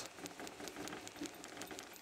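Faint, steady background hiss with no squeak or creak from the tractor's rear fender mounts. Their bolts have been sleeved with rubber hose to stop them squeaking.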